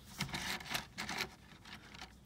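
Bicycle chain being lowered by hand into the liquid in an ultrasonic cleaner's tank: a scatter of soft clinks and rubbing from the links in the first second, then quieter handling.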